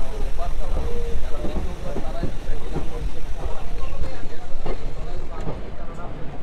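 Passenger train running, heard from an open coach doorway: a heavy low rumble with wind buffeting the microphone in uneven gusts.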